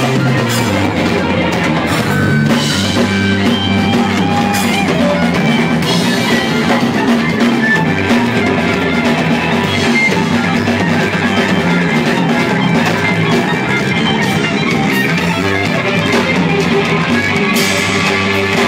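Live rock band playing: electric bass, electric guitar and drum kit, loud and without a break.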